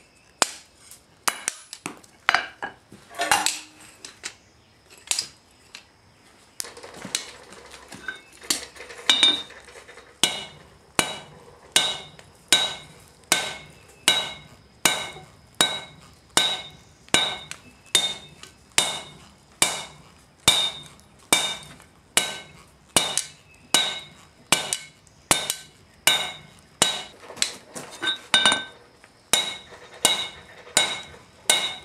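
Hand hammer forging a red-hot steel knife blade on an anvil: scattered blows at first, then, about a third of the way in, a steady rhythm of about three blows every two seconds, each with a bright metallic ring.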